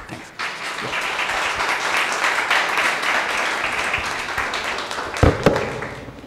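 Audience applauding at the end of a talk, building up in the first second and dying away about five seconds in, with a thump near the end.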